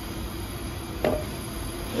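A single light knock about a second in, over faint steady background noise.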